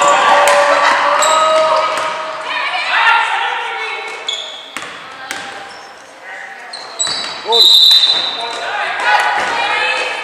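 Basketball game on a hardwood gym floor: the ball bouncing and sneakers squeaking. Voices shout through the first few seconds, and a loud, high-pitched squeal sounds shortly before the end.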